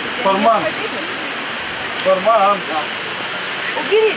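Steady rushing outdoor noise throughout, with two short stretches of indistinct talking, about half a second in and again about two seconds in.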